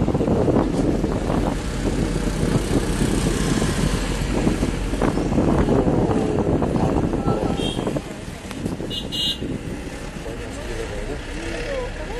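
Moving road vehicle heard from inside with the window open: a steady rumble of engine and tyres with wind rushing past, easing a little after about eight seconds. Two brief high tones sound about three-quarters of the way through.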